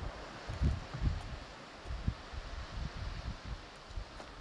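Wind buffeting a camcorder microphone in uneven low gusts, over a steady hiss of sea surf.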